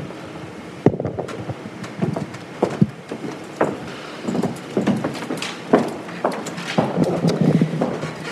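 Footsteps with irregular sharp knocks and paper rustling.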